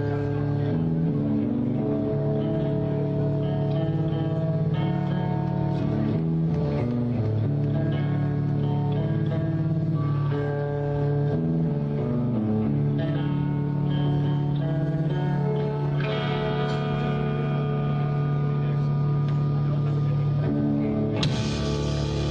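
Live rock band playing the opening of a song: electric guitar and bass hold slow chords that change every second or two. The sound grows fuller about sixteen seconds in, and near the end the full band comes in with a loud hit.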